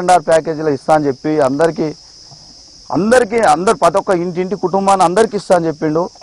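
A man talking in Telugu, with a pause of about a second near the middle, over a steady high-pitched insect drone.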